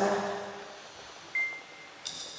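A single short, steady high-pitched beep lasting about half a second, just past the middle, over quiet room tone; a voice trails off at the very start.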